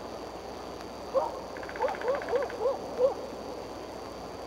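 A quick run of about six short hooting calls from a bird, each note rising and then falling in pitch, over a steady faint hiss.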